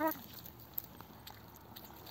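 A short laugh at the very start, then a few faint, soft clicks of hens pecking at a ripe tomato held in a hand.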